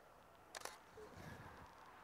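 A Canon DSLR's shutter fires once, a short sharp click about half a second in, as a frame is taken in AI Servo focus mode. Otherwise near silence.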